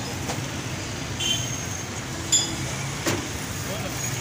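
Steady street traffic rumble, with a few sharp metallic clinks of steel utensils and pots, the loudest a little past halfway.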